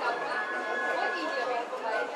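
Stadium crowd chattering steadily, with a few faint held tones mixed in.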